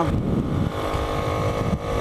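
Bajaj Platina 100 motorcycle's single-cylinder four-stroke engine running under way, its firing beat most distinct in the first half second, with wind rushing over the microphone.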